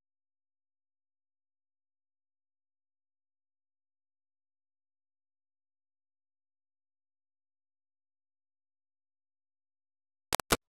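Silence: the sound track is blank, with no sound at all.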